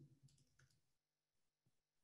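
Near silence with a few faint computer keyboard clicks in the first half second or so.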